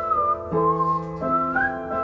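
Upright piano playing sustained chords under a whistled melody. The whistle wavers slightly in pitch and slides upward near the end.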